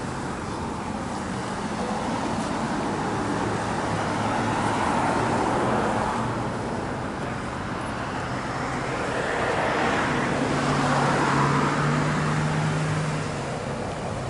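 Road traffic: an even hum of vehicles with two that swell louder and fade as they pass, about five and eleven seconds in, over a steady low engine drone.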